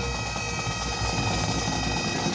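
Bagpipe band playing: the pipes' drones and chanter sound steadily under a loud, dense rushing noise.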